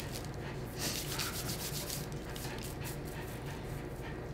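Paper sandwich wrapper being handled and rustled on a table, a run of quick crinkles over the first two seconds, then fainter, over a steady low hum.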